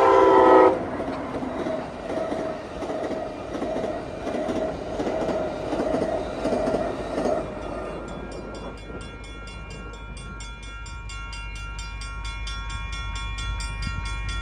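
Passenger train locomotive horn sounding a chord that cuts off about a second in. Then the rumble of the train rolling past, and from about eight seconds in the grade-crossing warning bell ringing steadily, about three strokes a second.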